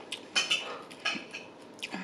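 Close-miked chewing of sushi: a few short, wet mouth smacks.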